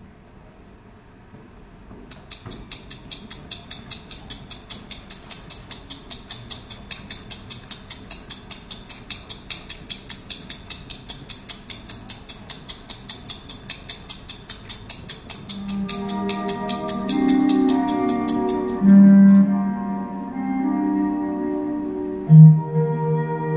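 Performance music track played loudly over speakers: after a short pause, a rapid, even ticking, like a wind-up mechanism, runs for over ten seconds. A keyboard melody then comes in about two-thirds of the way through.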